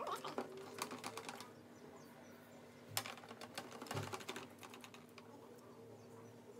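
Quick, light clicks and taps of a makeup brush and eyeshadow palette being handled, in two short flurries, the first at the start and the second about three seconds in.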